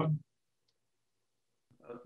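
A man's voice saying a last short word at the very start, then dead digital silence for over a second, until another man's voice begins just before the end.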